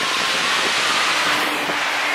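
Pool fountains splashing: a steady, even rush of falling water.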